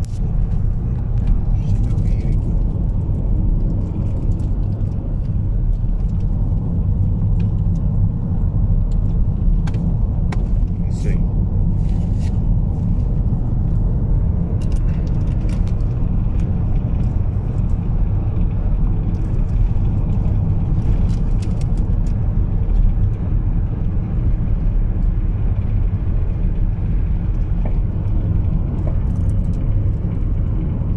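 Steady road and engine rumble inside a moving car's cabin, with scattered faint ticks and rattles.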